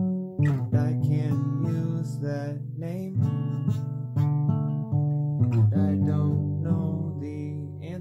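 Acoustic guitar strummed, a run of sustained chords with a change of chord every second or so and no singing over it.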